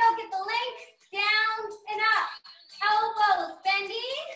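A high-pitched voice singing in short phrases, with some notes held for about half a second and brief pauses between them.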